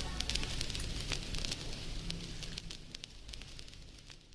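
Faint crackling and scattered clicks over a low hum, fading out steadily toward the end.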